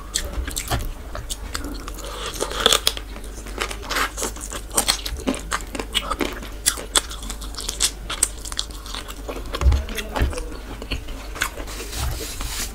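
Close-miked chewing of chicken masala and khichuri eaten by hand, with many short, irregular wet mouth clicks and smacks.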